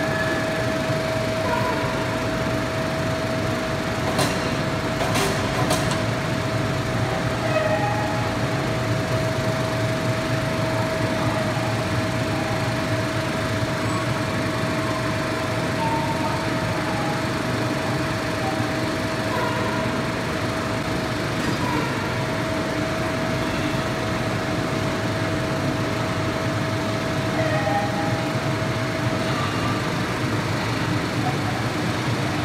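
Steady machinery hum with a constant high whine that drops out for a moment about two-thirds of the way through and stops just before the end. A few sharp clicks come about four to six seconds in.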